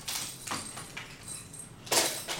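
Plastic baby rattle toys jangling and clacking on a plastic high-chair tray as an infant shakes and pushes them: a few short rattles, the loudest one near the end.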